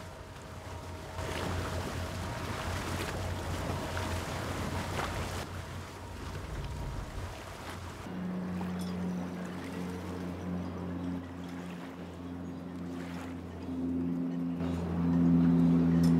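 Wind and water rushing past a boat under way, over the low hum of its motor. About halfway through this gives way to slow ambient music of low, steady held notes.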